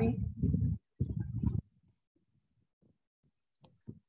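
A woman's voice heard over a video call for about the first second and a half, then dead silence from the call's audio cutting to nothing, broken only by a couple of faint ticks near the end.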